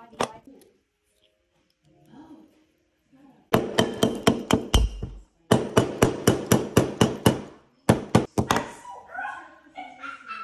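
Hammer blows on a silver bangle bracelet held on a steel bracelet mandrel, shaping it round. The blows come about five a second in three quick runs with short pauses, starting a few seconds in, and each one rings.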